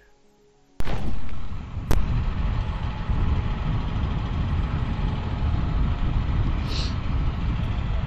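An outdoor field microphone cuts in with a sharp click about a second in, followed by a steady, loud wind rumble on the microphone; a second click comes a second later.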